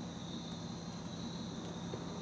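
Steady room tone: a low hum and a thin, high-pitched whine under a soft hiss, with a couple of very faint ticks from the small board being handled.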